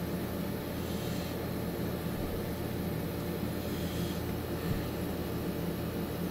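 A steady low mechanical hum, as of an appliance motor or fan running, with no breaks or changes.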